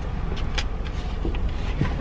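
Steady low rumble of a car idling, heard from inside the cabin with the driver's door open, with a few light clicks and rustles as someone climbs in with a paper bag.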